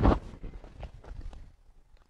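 A judo partner thrown with te guruma lands on the tatami mats: a thud right at the start, then a few soft knocks and scuffs of bodies on the mat over the next second or so.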